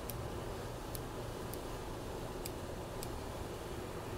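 Steady low hum of a ventilation fan, with a few faint, light clicks about a second apart as small items are handled.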